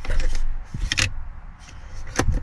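Plastic pop-out cup holder in a Mercedes C200's rear armrest being worked by hand: a rubbing rattle, then a sharp click about a second in.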